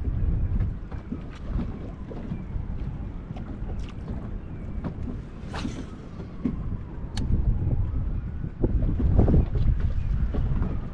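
Wind buffeting the microphone on a bass boat's bow, with small waves slapping against the hull in short splashes. A faint whine from the electric trolling motor slowly rises and falls, and a stronger gust comes near the end.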